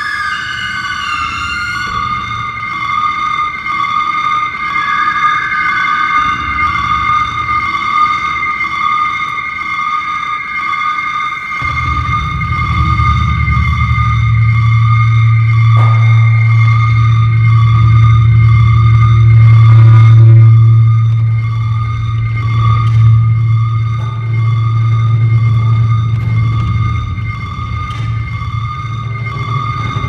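Daxophone drone music: sustained high tones, sliding in pitch at first, joined about twelve seconds in by a loud, deep low drone that holds.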